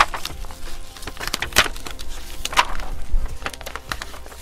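Pink puff heat transfer vinyl being peeled away from its sticky carrier sheet by hand, an irregular crackling and tearing with many small snaps.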